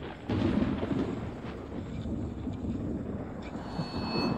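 A deep, rolling rumble like thunder, surging about a quarter second in and rumbling on.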